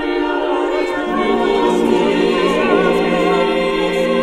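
Mixed chamber choir of men and women singing a cappella in sustained chords; lower voices come in about a second in beneath the upper parts.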